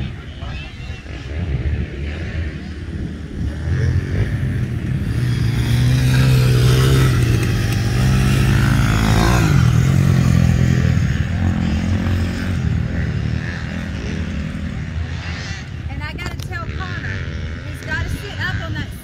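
Honda CRF250 dirt bike's single-cylinder four-stroke engine running as it rides past close by. It grows louder from about four seconds in, is loudest in the middle, then fades as the bike moves away, with other dirt bikes running in the distance.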